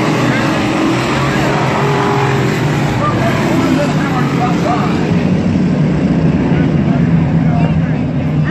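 A pack of 358 dirt-track modified race cars running around the oval together, a continuous engine roar that grows a little louder in the second half, with spectators' voices mixed in.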